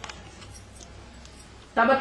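Faint steady background hiss and low hum of a recorded lecture during a pause, with a few faint clicks; a man's voice resumes near the end.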